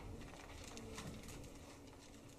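Quiet room tone with faint rustling and light clicks of Bible pages being turned, over a low steady hum.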